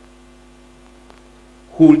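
Steady electrical mains hum in the microphone sound feed, a few constant tones with nothing else over them; a man's voice comes back near the end.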